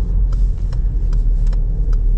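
Steady low rumble of a Citroën C4 in its cabin as it drives slowly, with a few faint ticks over it.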